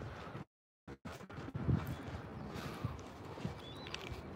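Footsteps on a dirt path with soft low thuds, over light outdoor background noise. The sound cuts out completely for a split second about half a second in.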